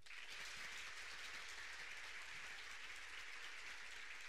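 Audience applauding, breaking out all at once and holding steady.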